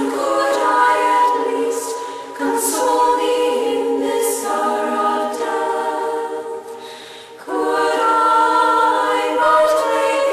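A choir of Benedictine nuns singing a hymn a cappella, holding long notes in harmony. The voices thin out about six and a half seconds in, then come back together a second later for the next phrase.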